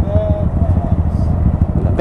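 A 2017 Honda Grom's small single-cylinder engine idling with a steady, fast-pulsing low rumble, while the bike stands still. A brief faint voice is heard near the start.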